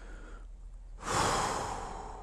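A person's sigh: one long breath let out about a second in, sudden at the start and fading away over about a second.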